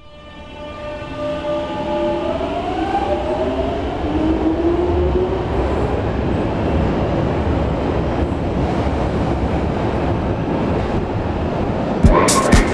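Underground tube train pulling away: the motors' whine rises in pitch over the first few seconds, then the train runs on with a steady rumble. The sound fades in at the start.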